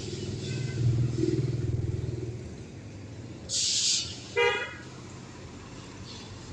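Street traffic on a wet road: a passing vehicle's low engine rumble for the first two seconds, a brief hiss about three and a half seconds in, then a short car horn toot about a second later.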